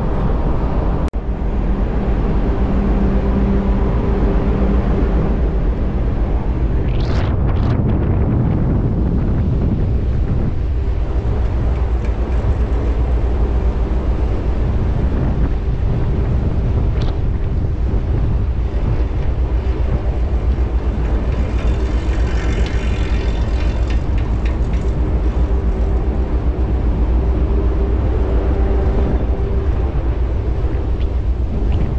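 Loud, steady low rumble of a ship's engine exhaust and machinery in and around the funnel, with a low hum in the first few seconds and wind buffeting the microphone.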